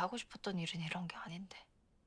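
Only speech: a woman speaking one short line of Korean dialogue, ending about one and a half seconds in, then quiet.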